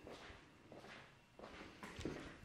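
Faint footsteps on a wooden floor, a few soft steps about half a second apart.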